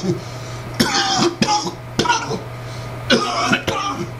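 A man coughing and clearing his throat in short bursts, about a second in and again around three seconds in, over a steady low hum.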